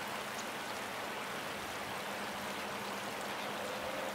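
Shallow river water flowing over a stony bed: a steady, even rushing.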